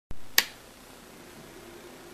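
Illuminated rocker power switch on a karaoke machine snapping on with one sharp click just under half a second in, after a low thump at the very start. A faint steady hum follows.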